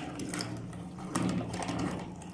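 Hand-cranked metal meat grinder being turned, its auger crushing an apricot into pulp: a steady mechanical grinding with a run of clicks.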